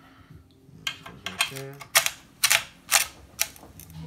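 Metal grinding plate of a KitchenAid meat-grinder attachment clicking and clattering against the grinder head as it is fitted in place: a run of about a dozen sharp, uneven clicks, the loudest in the middle.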